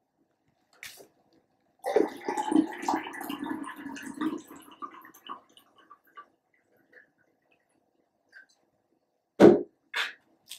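Water poured from a glass into a glass of soda: a splashing pour lasting about three and a half seconds, then thinning to a few faint drips. A brief sound comes near the end.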